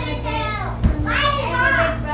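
Children's voices chattering and calling out in a small room, with a single thump just before a second in, the loudest moment, over a steady low hum.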